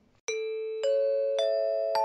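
A rising four-note chime sound effect: bell-like notes struck about half a second apart, each higher than the one before, ringing on together.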